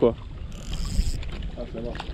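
Wind rumbling on the microphone and water lapping close by, with a short hiss about half a second in.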